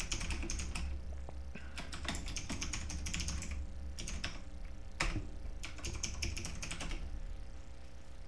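Typing on a computer keyboard: irregular bursts of keystrokes, one key struck harder about five seconds in, the typing stopping about seven seconds in. A low hum runs underneath.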